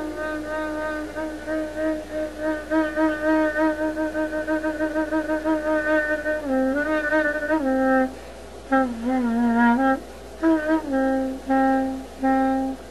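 Solo clarinet holding one long note with a pulsing vibrato for about six seconds, then stepping down into a phrase of short, separated lower notes.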